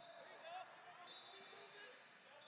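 Near silence: faint, indistinct voices of people talking in the background, with a thin, high, steady tone that comes and goes.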